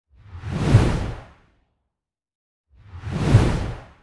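Two whoosh transition sound effects, each swelling up and fading away over about a second and a half with a deep low rumble at its peak, about two and a half seconds apart.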